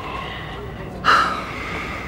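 A person's breathy sigh, a sudden audible breath about a second in that trails off.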